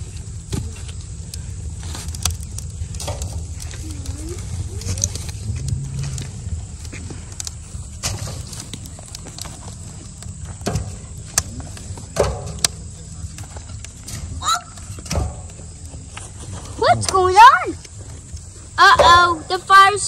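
Small wood fire in the firebox of a stainless steel canner, with scattered sharp crackles and snaps as sticks are fed in. High-pitched children's voices call out near the end.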